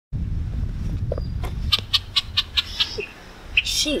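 Birds chirping: a quick run of short chirps, about five a second, in the middle of the clip, after a low rumble in the first second and a half.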